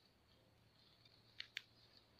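Two short, sharp crackles about a fifth of a second apart, over near silence, as a clump of dry pine needles is pulled apart by hand.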